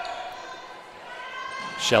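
A basketball bouncing on a hardwood court during live play, over the steady background of the arena.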